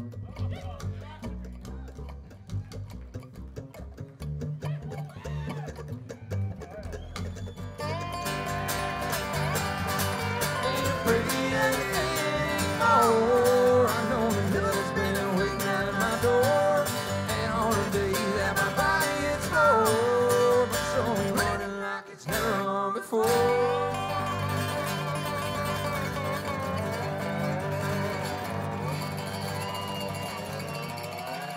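Live acoustic string band playing an instrumental passage: plucked upright bass carries the first several seconds almost alone, then mandolin, resonator guitar and acoustic guitar come in about eight seconds in, louder, with sliding lead lines. There is a brief break around the two-thirds mark before the band plays on.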